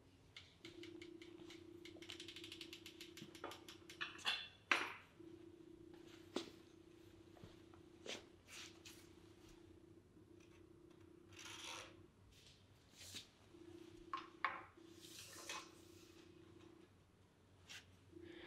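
Quiet handling sounds of a mountain bike and lumber on a garage floor: a run of fast light ticks in the first few seconds, then scattered knocks and short scrapes, over a faint steady hum that cuts in and out.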